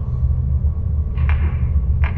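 Deep, steady low rumble from a cartoon soundtrack: the menacing sound of an unseen creature drawing near in a dark pit, with a brief faint whoosh about a second in.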